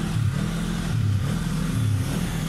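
Snowmobile engine running while riding over snow, heard from the rider's seat, its pitch rising and falling a little.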